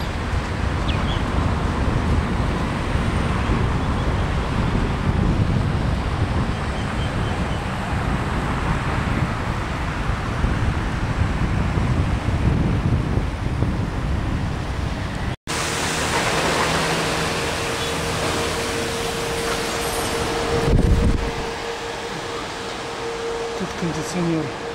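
Wind buffeting the microphone over the noise of road traffic. After an abrupt cut, a steady hum with a single held tone, and a short low rumble near the end.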